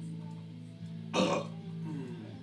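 Electric guitar music with steady low notes held through, broken about a second in by a short, loud, noisy burst.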